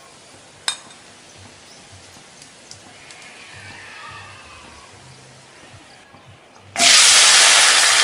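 A quiet stretch with a single click under a second in, then about seven seconds in a loud frying sizzle starts all at once: chilies, shallots, garlic and tomato dropped into hot oil in a wok for a sambal.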